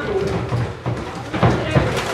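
Boxing gloves striking during sparring: a few sharp smacks, the loudest two close together about one and a half seconds in, with voices in the background.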